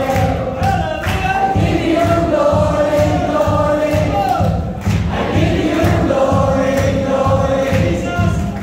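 Live worship music: a band with a steady drum beat and a group of voices singing a Tagalog praise song in long, held notes.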